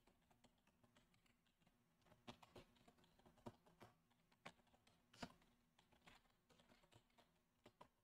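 Faint computer keyboard typing: a handful of scattered, separate keystrokes, starting about two seconds in.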